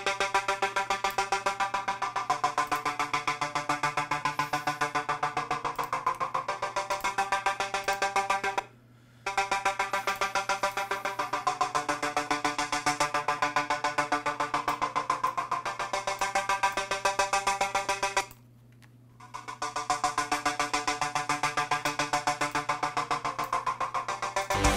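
Synthesizer chorus part playing back: a fast, evenly pulsing synth pattern over sustained chords. It cuts out twice, each time for about a second.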